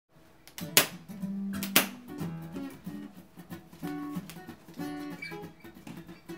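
Acoustic guitar opening a song: two loud strummed strokes about a second apart, then single picked notes moving in a slow melodic line.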